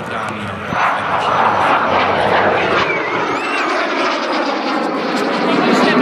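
Aero L-39C Albatros jet trainer's Ivchenko AI-25TL turbofan heard in a low display pass: a loud, steady jet roar that swells about a second in, with a thin whine sliding in pitch above it.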